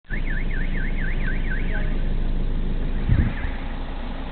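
A siren yelping in a fast rising-and-falling warble, about four sweeps a second, that fades out about halfway through and returns faintly for two sweeps. Under it runs a steady low engine hum heard from inside a car, with a dull thump just after three seconds.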